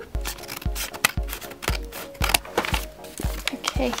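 Background music with a steady beat about twice a second, over paper crinkling and rustling as a mail package is opened and a letter is pulled out.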